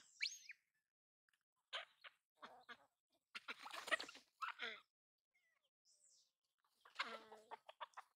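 Faint, scattered calls from free-ranging chickens: short clucks now and then, with a couple of brief high chirps.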